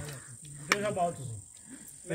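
Crickets chirping as a steady high-pitched trill, with faint voices in the background and a single sharp click about a third of the way in.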